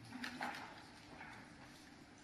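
A few light clicks and knocks of pens and papers on a wooden desk during signing, bunched about half a second in, over a faint steady hum of the hall.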